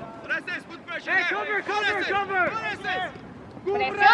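Spectators' voices talking and calling out on the sidelines, louder from about a second in.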